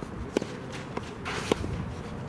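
Tennis ball struck by rackets twice, about a second apart, in a rally on a clay court. Shoes scuff on the clay just before the second hit.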